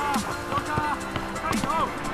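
Background music with sung vocals.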